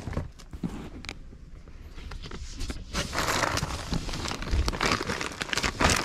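Plastic packaging crinkling and rustling as goods are handled and pulled from a box, with denser rustling about three seconds in and again near the end.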